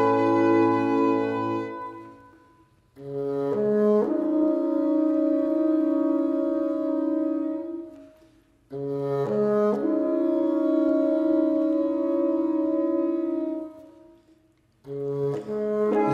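A small acoustic ensemble of French horn, bassoon, flute and fiddle plays slow, sustained chords. The music comes in phrases: each one starts with stepped entries, holds, then fades away, with brief silences at about 3, 8 and 14 seconds.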